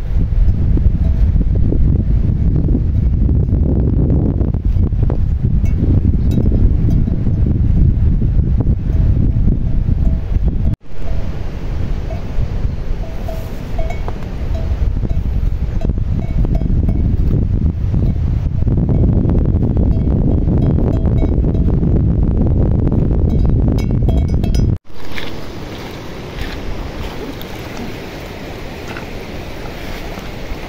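Wind buffeting the microphone: a loud, steady low rumble, broken twice by a sudden brief silence and lower over the last few seconds.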